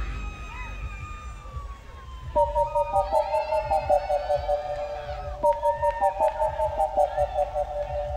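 Psytrance breakdown: the full beat drops out, leaving a slowly falling synth tone. About two and a half seconds in, a bright, high synth line of rapidly alternating notes starts over light ticks.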